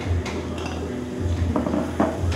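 Clinking and clatter of metal kitchenware, with a short ringing clink shortly before the end, over a steady low pulsing beat.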